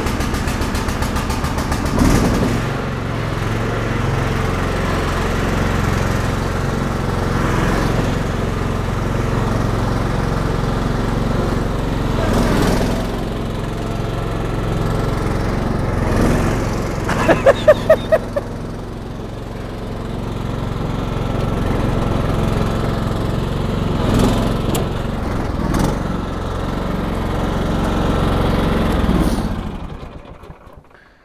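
STIHL RT 5097 ride-on mower's petrol engine running steadily while the mower drives, picking up about two seconds in. Partway through come about six quick, loud beeps in a row. The engine sound falls away near the end.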